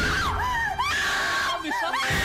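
A woman screaming in panic: a string of short, high shrieks that rise and fall, then one longer held scream about a second in.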